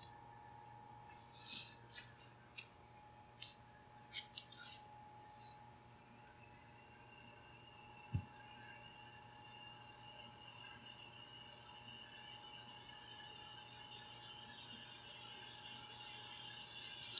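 Near silence: room tone with a faint steady electrical hum, broken by a few short soft clicks and hisses in the first five seconds and a single click about eight seconds in.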